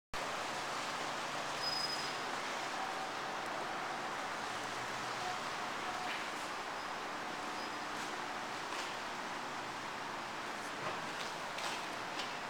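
Steady hiss of background room noise, with a few faint taps near the end.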